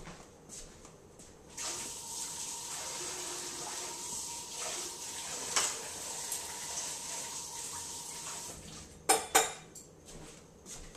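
Water running from a kitchen tap for about seven seconds, then shut off, followed by two sharp knocks near the end.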